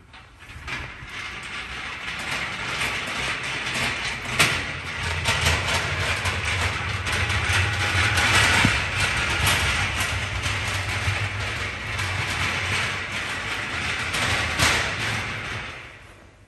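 Welded steel-tube chassis jig rolling on its casters across a concrete workshop floor as it is pushed: a steady rolling rumble with the frame rattling. A couple of sharper knocks come about four seconds in and near the end.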